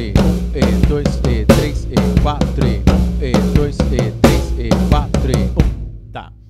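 Acoustic drum kit playing a tribal groove with a triplet variation at about 90 BPM: bass drum and toms with snare accents in a dense, repeating pattern. The playing stops just before the end.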